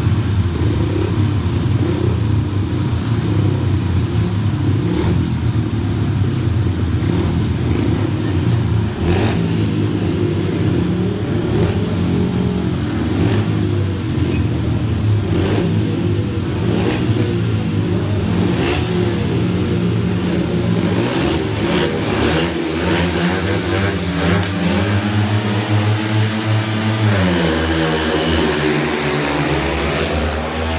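Several 500cc single-cylinder speedway motorcycles revving at the starting gate, then accelerating away together off the start near the end, the engine pitch climbing and shifting as they pull away.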